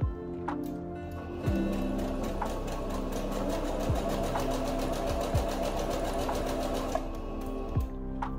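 Singer Patchwork 7285Q sewing machine stitching a seam at a fast, steady speed, starting about a second and a half in and stopping about a second before the end.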